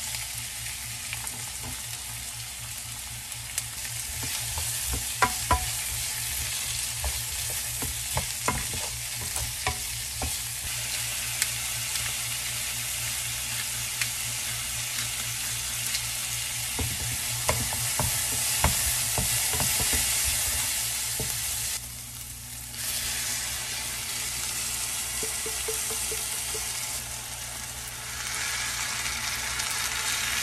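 Diced onion, garlic and bell pepper sizzling in olive oil in a frying pan, stirred with a wooden spoon that clicks against the pan now and then. The sizzle drops briefly a little over twenty seconds in, then picks up again.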